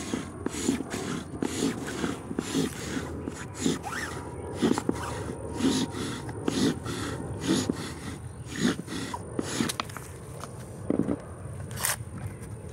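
Seep willow spindle grinding against an incense cedar fireboard as a sapling-sprung cord spins it back and forth, about one scraping stroke a second; the friction is already raising smoke. The strokes stop about ten seconds in, and a sharp click comes near the end.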